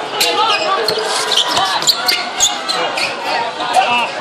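Basketball bouncing on a hard outdoor court during play, a string of short sharp thuds over the chatter of players and spectators.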